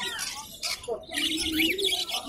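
Caged birds chirping: several short rising-and-falling chirps, most of them in the second half, over a low background of voices.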